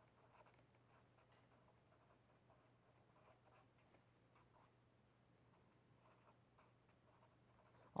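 Faint scratching of a pen writing on paper in short, irregular strokes, over near-silent room tone.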